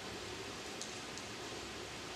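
Room tone of a lecture hall: a steady, even hiss, with two faint light ticks about a second in.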